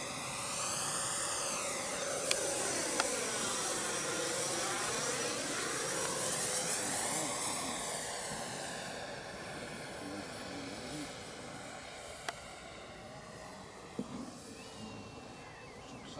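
Electric ducted fan of a radio-controlled De Havilland Vampire model jet (FMS 64 mm, 11-blade) whining on a low pass. Its tone sweeps down and back up as it goes by, loudest in the first half, then fades away over the second half, with a few short clicks along the way.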